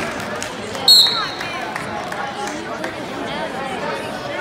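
Referee's whistle, one short blast about a second in, starting the wrestling bout, over steady crowd chatter in the gym.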